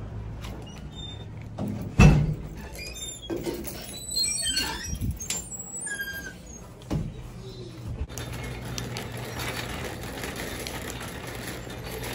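A knock about two seconds in, then several seconds of short high squeaks and light rattles from a glass-and-aluminium shop entrance door and a wire shopping cart being handled, followed by a steady low hum.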